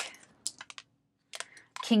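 Tarot cards being shuffled in the hands: a few light clicks of cards snapping together, a short pause, then a couple more clicks.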